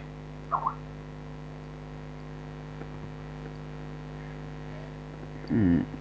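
Steady electrical mains hum, a low buzz with a stack of steady tones. A short vocal sound comes about half a second in, and speech begins just before the end.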